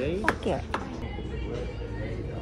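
A decorated metal tin box set down on a counter against another tin: two sharp knocks, with a brief scrape of tin on tin before and between them.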